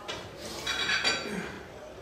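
Pool balls clacking together with a ringing click as a 9-ball rack is set at the foot of the table.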